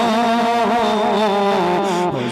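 A man's voice singing a devotional Urdu kalam (naat) into a handheld microphone, holding one long, slightly wavering note that sinks a little in pitch.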